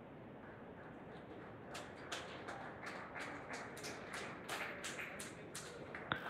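Faint quick taps, about three or four a second, over a low hiss; they start a couple of seconds in and stop just before the end.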